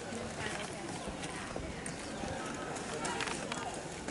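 Footsteps on concrete steps as several people climb, with faint voices talking in the background.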